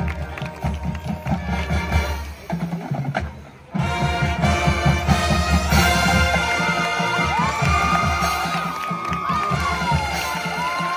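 High school marching band playing its field show live, with held brass chords over drums; the band thins out and drops away a little past two seconds in, then comes back in loudly just before four seconds. Crowd cheering and shouts ride over the music.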